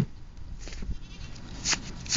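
Goat feeding with its muzzle in a metal pot of grain: a sharp knock against the pot at the start, then scattered crunching and scraping of the feed, with a scratchy rustle near the end.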